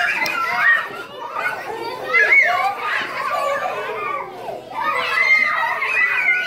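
Group of young children at play, many high voices calling out and chattering over one another.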